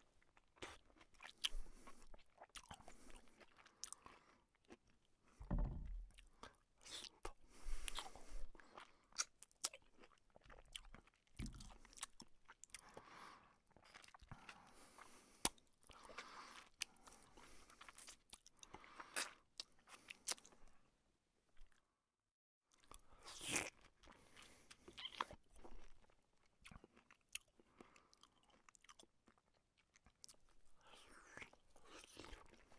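A person chewing and biting food while eating with his hands, in short irregular bursts of mouth and food sounds. The sound cuts out completely for a moment about two-thirds of the way through.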